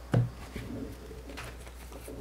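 Playing cards set back down on a pile on the table mat: a short soft thump just after the start, then a faint tap about a second and a half in.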